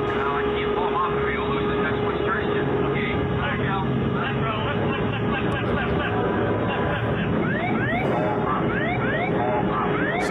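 Cockpit voice recording from the DC-10 of United 232: crew voices shouting over a steady hum. From about seven and a half seconds in, the ground proximity warning's repeated rising 'whoop whoop, pull up' alarm sounds, the warning that the aircraft is sinking too fast toward the ground.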